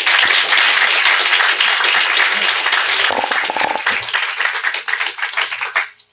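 Audience applauding: a dense patter of many hands clapping that is loudest at the start and thins out toward the end.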